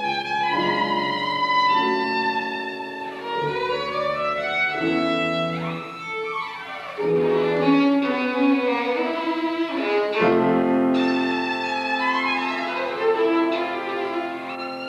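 Violin and piano duo playing classical music: the bowed violin carries the melody in held notes and quick rising and falling runs over the piano accompaniment.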